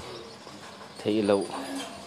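A person's voice: a short spoken word or exclamation about a second in, followed by a brief low hum.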